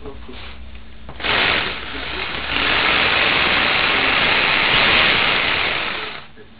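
Makita HR2450 780 W SDS-Plus rotary hammer running free in the air with no load. It gives a short burst about a second in, then runs steadily and loudly from about two and a half seconds until it stops at the end.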